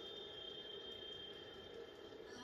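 Faint stadium ambience from a televised baseball game heard through the TV speaker: a low crowd murmur with a thin steady high tone that stops about one and a half seconds in.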